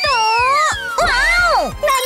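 A high-pitched, squeaky voice making two long gliding cries, the first arching up and down over the first second, the second dipping and rising shortly after, over light background music.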